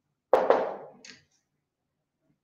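A short knock: two quick hits close together about a third of a second in, fading out over roughly half a second.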